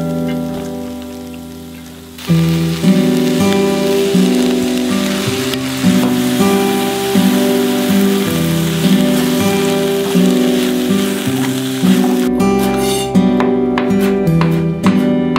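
Background music throughout, with the sizzle of rice stir-frying in a hot wok from about two seconds in until near the end.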